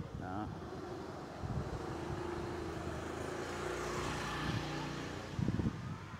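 A passing vehicle's engine: a steady hum that swells to its loudest about four seconds in, then fades away.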